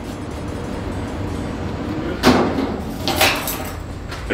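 Metal locker door knocking and clattering as it is pulled open: a sharp bang a little over two seconds in, then a second, lighter knock about a second later.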